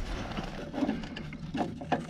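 Light handling noise of a metal air-gauge bracket and fitting being worked into place by hand, with a few faint clicks.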